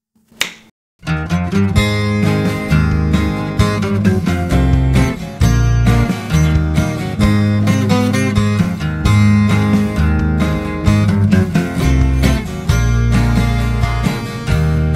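A single finger snap, then a 12-string acoustic guitar tuned down a half-step starts playing chords about a second in and keeps playing.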